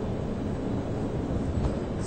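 Steady low background noise of a quiet snooker arena between shots, with one faint tap near the end.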